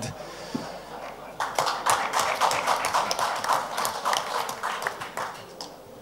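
Audience applauding, starting about a second and a half in and dying away near the end.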